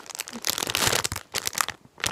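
Clear plastic bag crinkling as it is handled, a dense run of crackles that thins out and dies away near the end.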